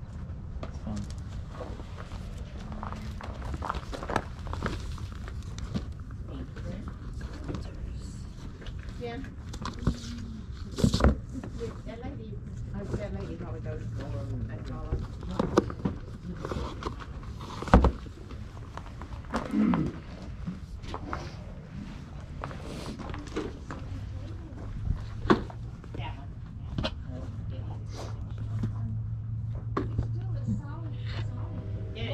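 Indistinct voices with scattered knocks, clicks and rustles from books and CD cases being handled, a couple of sharper knocks near the middle, over a steady low rumble.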